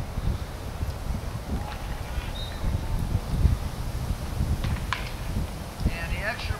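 Wind buffeting the microphone with a steady low rumble, and faint short calls of distant voices now and then.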